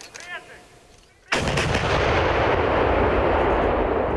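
A battery of 2S19 Msta-S 152 mm self-propelled howitzers firing a volley: a sudden, very loud blast a little over a second in, followed by a sustained rumble.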